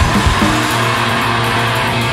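Loud punk/hardcore band recording in a break without drums: electric guitars holding a ringing chord that settles into steady tones about half a second in.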